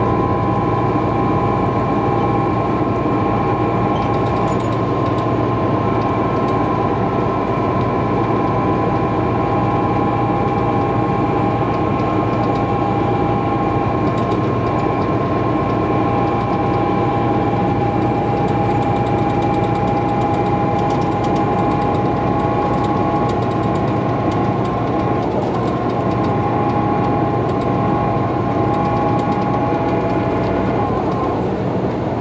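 Cabin sound of a 2017 MCI J4500 motor coach cruising at highway speed: a steady low drone from its Detroit Diesel DD13 engine and Allison B500 transmission under tyre and road noise, with a steady high whine on top. Light clicks and rattles come and go.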